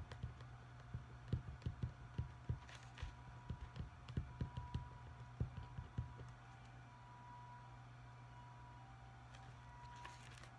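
Pen writing on paper on a desk, heard as a run of soft, irregular low taps for about six seconds before stopping. A steady low hum runs underneath.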